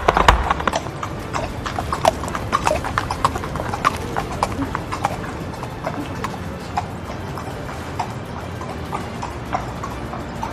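Horse hooves clip-clopping, a sound effect laid over an animated horse. The hoofbeats come thick and fast at first and grow sparser toward the end.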